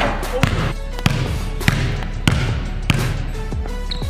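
A basketball bouncing on a hardwood gym floor, about five bounces evenly spaced a little over half a second apart, over background music with a beat.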